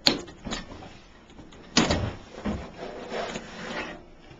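Outer cover of a Midmark Ritter M7 autoclave being pulled off its body: a sharp clack at the start and a second knock half a second later, then a loud clatter about two seconds in, followed by scraping and rattling as the cover comes free.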